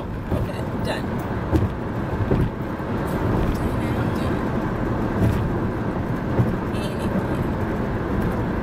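Steady road and engine noise heard from inside a moving car's cabin.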